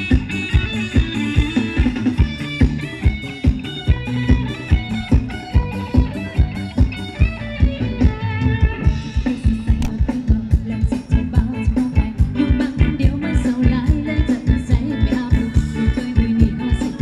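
Live band playing Thai ramwong dance music: a guitar melody over a steady drum beat.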